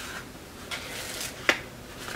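Quiet hand handling of a plastic seed-starting cell tray and the damp potting soil in it: a faint rustle and one sharp click about one and a half seconds in.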